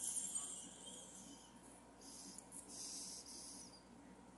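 Breath drawn hissing through a glass hand pipe while a lighter flame is held to the bowl, in two pulls: one at the start that fades over a second or so, and a second from about two seconds in until near the end.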